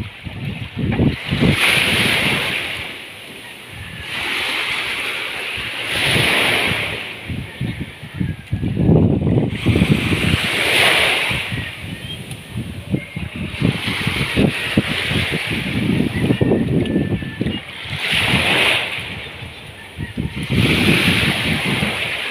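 Small waves washing in around a wooden outrigger boat in shallow water, swelling and fading about every four seconds.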